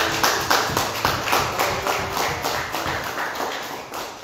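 Hands clapping in an even rhythm, about four claps a second, gradually fading out after the music stops.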